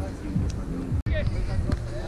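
Distant voices of players calling out during a beach volleyball rally, over a steady low rumble. The sound cuts out for an instant about a second in.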